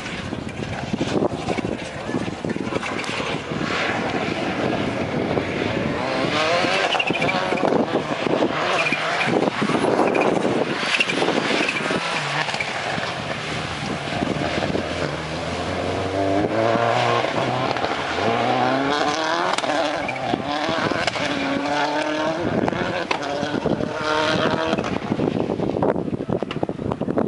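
Rally car engine revving hard on a wet gravel course, its pitch rising and falling again and again as the driver accelerates, lifts and shifts through the turns.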